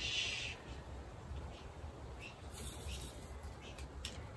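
Faint handling of garden wire among the fern's fronds: a short hiss near the start, then a few light ticks and rustles, over a steady low rumble.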